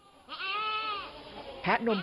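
A dairy goat bleats once, a single call of just under a second whose pitch rises and then falls.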